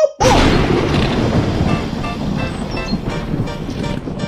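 End-screen sound effect: a sudden loud boom-like hit that dies away slowly, with short repeating music notes coming in under it.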